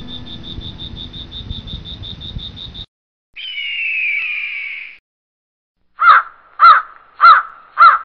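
A crow cawing four times in quick succession near the end. Before that comes a rapid high pulsing chirp of about seven pulses a second over a low rumble, then a single harsh call with a falling pitch.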